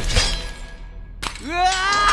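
Film-trailer sound effects: a sudden crash-like hit at the start that dies away, a sharp crack a little past halfway, then a long rising, pitched cry or whoosh leading into the next shot.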